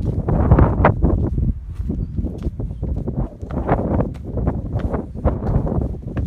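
Wind buffeting the microphone in an uneven low rumble, with footsteps climbing concrete stairs.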